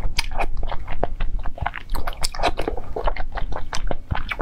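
Close-miked chewing and mouth sounds of a person eating spoonfuls of soft sweet soup: a quick, irregular run of short wet clicks.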